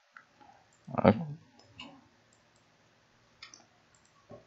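A few sparse, light clicks from working a computer's mouse or keys, around one spoken "okay".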